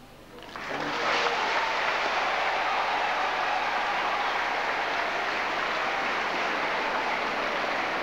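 Congregation applauding: a dense, steady clapping that starts about half a second in, swells over a second and holds level.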